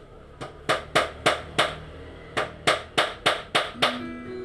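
Hammer driving nails into wooden floor planks: two runs of five or six quick blows, about three a second, with a short pause between them.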